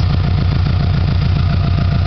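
Subaru flat-four engine idling steadily with its air-conditioning compressor engaged; the engine management raises the idle while the A/C runs.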